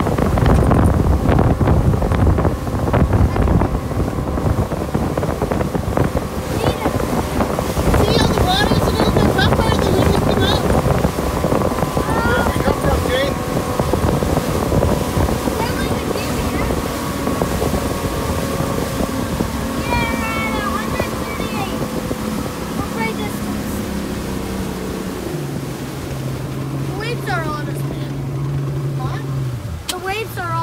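Motorboat engine running underway, with wind buffeting the microphone and water rushing past the hull. In the second half the engine's tone steps down in pitch as the boat slows.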